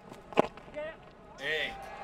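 A single sharp crack of a cricket bat striking the ball, followed by players calling out on the field.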